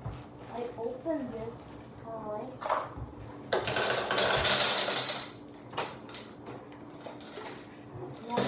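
Gumballs poured from a plastic bag into a small gumball machine's plastic globe, rattling in a dense burst for under two seconds about halfway through, with scattered clicks and bag crinkling around it.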